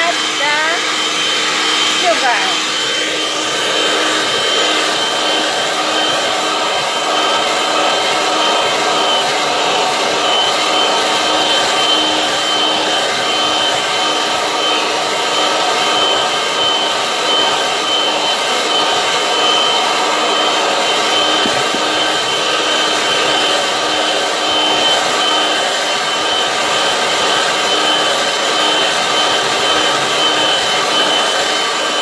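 Electric hand mixer running steadily, its beaters whisking egg whites for meringue in a glass bowl: a constant motor whine with a steady high tone, a little bit noisy.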